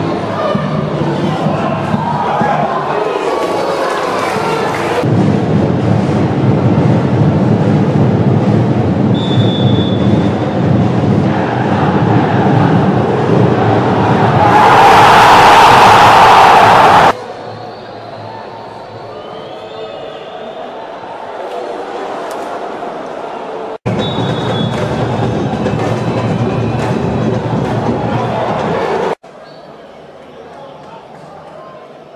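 Stadium crowd noise from televised football matches, changing abruptly at each edit between clips. About halfway a very loud crowd roar swells for a couple of seconds, then cuts off suddenly.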